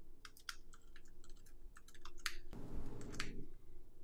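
Typing on a computer keyboard: an irregular run of quick key clicks, with a brief soft rush of noise about two and a half seconds in.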